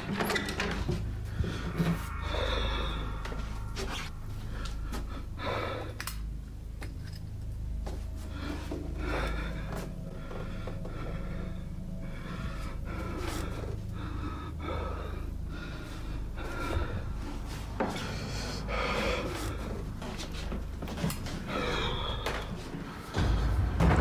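A man breathing heavily and unevenly, one breath every two to three seconds, with a bed creaking, all recorded on a phone in a small bedroom. A low steady rumble runs underneath and swells louder just before the end.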